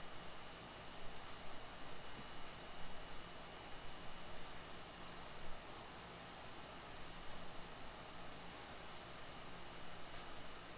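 Quiet workshop room tone: a steady hiss with a faint high tone, and soft, irregular handling sounds as the aluminium track saw guide rail is pressed and shifted into line on the tabletop.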